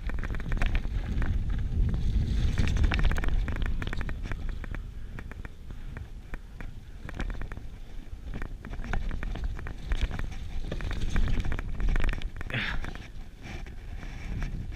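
A Giant Full-E+ electric full-suspension mountain bike rolling along a rough dirt-and-rock singletrack: tyre rumble over the ground with frequent small rattles and knocks from the bike, mixed with wind buffeting the microphone. The rumble swells louder in two stretches, early and again near the end.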